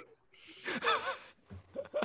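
Men laughing: a breath, then a laugh with a wavering pitch about a second in, then a few short chuckles near the end.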